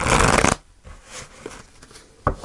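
A tarot deck being shuffled: one dense rattle of cards lasting about half a second at the start, then a few faint card taps.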